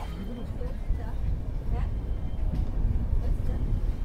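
Low steady rumble of an express train's sleeper coach rolling slowly out of a station, heard from inside the coach, with faint voices in the background.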